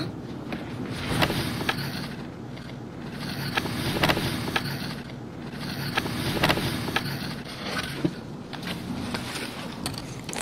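Cardboard cake box being handled and its lid opened, with scraping and rustling and scattered light clicks, over a low rumbling background that swells and fades every couple of seconds.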